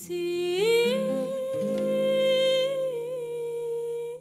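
A woman's solo singing voice with a small band: she slides up into a long held note about half a second in and sustains it, over steady instrumental chords underneath.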